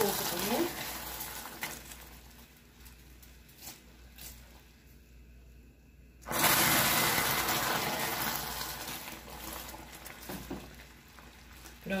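Hot caramel in a thick aluminium pot hissing as small amounts of water are added to it. A loud hiss fades away over a couple of seconds, then a second hiss starts suddenly about six seconds in and dies down slowly.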